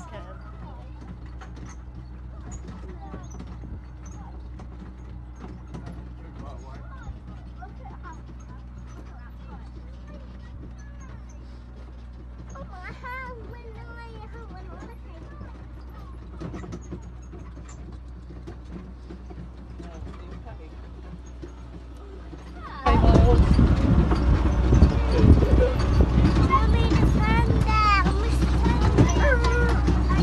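Low, steady engine drone of a small land-train ride, with faint passengers' voices over it. About 23 s in the sound turns suddenly much louder and rougher, a rattling rush with many knocks.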